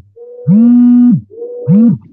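Video-call audio breaking up: a voice is smeared into loud, buzzy held tones of one fixed pitch, two of them under a second each with a higher, thinner tone between, the robotic sound of a dropping internet connection.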